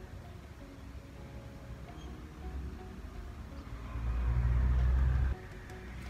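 Low rumble of a car passing outside, swelling about four seconds in and cutting off suddenly a little after five seconds.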